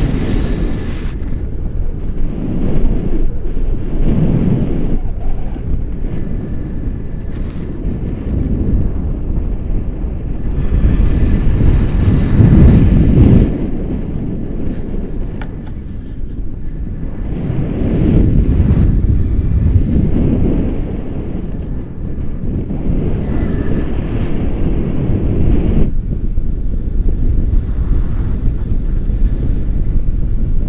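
Wind rushing over an action camera's microphone held out on a selfie stick in paraglider flight: a loud low rumble that swells and eases in gusts, loudest about twelve seconds in.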